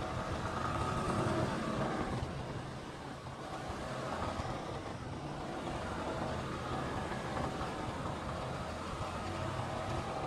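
Motor scooter engine running steadily while riding, with road and wind noise over it.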